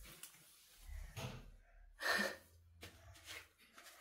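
Faint rustling of a stretchy fabric tube scarf being pulled over a child's face, with a few short breaths through the cloth.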